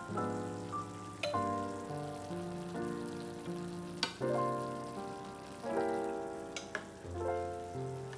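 Gentle instrumental background music with sustained notes changing about once a second, over a faint sizzle of chicken drumsticks in a pan of simmering tomato and wine sauce. A few sharp clicks, metal tongs handling the chicken, fall about a second in, at four seconds, and twice more near the end.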